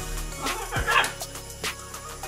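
Background music with a steady beat, and a short excited call from a young green-winged macaw about half a second in, lasting about half a second.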